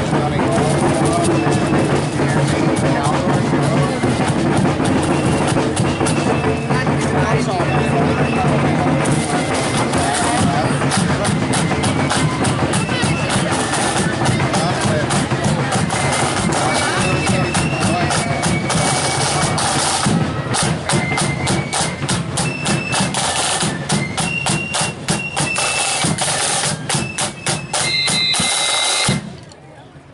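Marching band playing a tune, a high melody over rapid snare-drum strokes and bass-drum beats, that stops abruptly about a second before the end.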